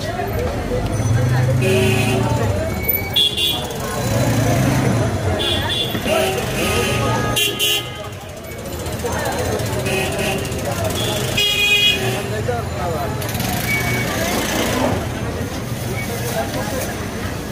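Busy street ambience: people talking over traffic rumble, with several short vehicle horn toots.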